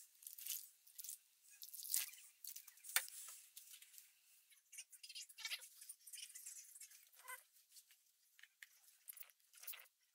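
Faint, irregular crackling and ticking from a compressed coconut-fibre (coir) brick soaking up water in a plastic tub.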